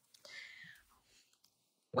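A brief, faint breathy whisper from a person's voice, lasting about half a second. Near silence follows, and speech starts right at the end.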